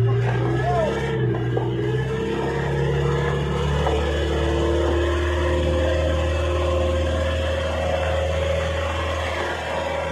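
Boat engine running steadily, its pitch shifting a little.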